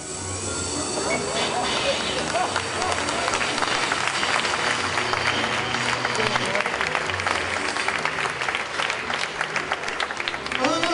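Theatre audience applauding steadily: a dense patter of many hands clapping, with a few short rising whoops in the first couple of seconds.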